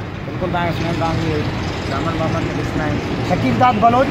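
Men's voices talking over steady street traffic noise.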